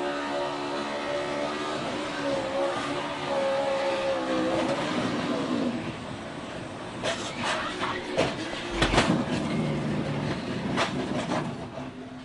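On-board audio of a NASCAR Cup stock car's V8 running at speed in the pack, its note bending and falling away as the car is hit in the right rear. From about seven seconds in come a string of violent crashing impacts as it slams into the wall, the loudest with a deep thud about nine seconds in.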